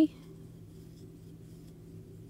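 Faint scratching and rustling of a crochet hook pulling acrylic-wool yarn through loops as chain stitches are worked, over a low steady hum.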